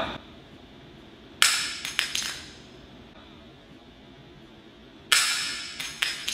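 REOS Mods LP Grand vape box mod dropped from the top of a tall ladder, hitting a concrete floor with a sharp, solid clack and clattering twice more as it bounces. A second, similar clack comes about five seconds in.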